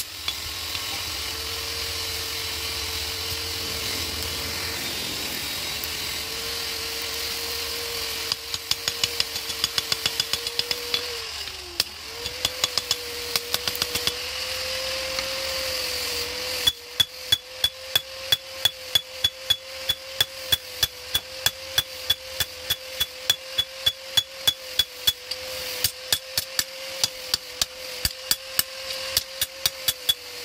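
Hand hammer striking a red-hot machete blade on a steel anvil: a few scattered blows in the first half, then steady hammering at about three blows a second from just past the middle on, over a steady hum.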